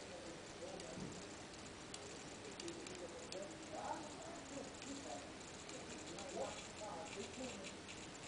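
A small servo motor in a home-built organ air-control box ticks and clicks faintly as it slides a white plastic valve plate across an air port. Faint wavering tones rise and fall over it, loudest about four and six and a half seconds in.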